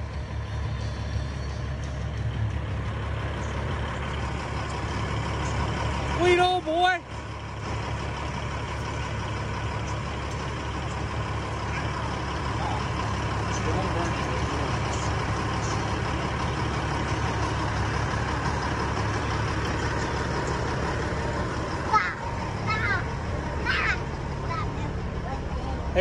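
Semi truck's diesel engine idling steadily, a low even rumble. A child's voice calls out briefly about six seconds in and again near the end.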